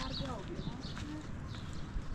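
A short voice sound falling in pitch, with small birds chirping and a couple of sharp clicks, one at the start and one about a second in.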